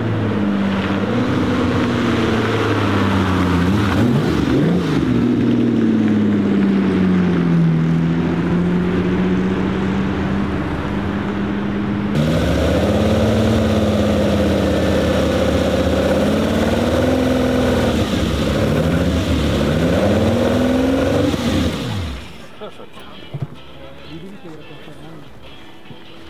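Ferrari 250 Testa Rossa's carburetted V12 engine running at low revs in traffic, its pitch rising and falling several times with the throttle. The sound falls away sharply near the end.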